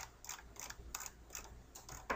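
Computer mouse scroll wheel being turned, its notches giving a quick, uneven run of faint ticks, about three to four a second, as a long drop-down list is scrolled.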